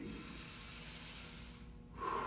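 A man's long, slow deep breath, a faint airy hiss that fades out about a second and a half in, taken during a deep-breathing exercise.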